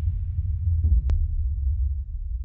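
Deep, steady low drone from a horror-trailer soundtrack, with a brief falling sweep and one sharp click about a second in.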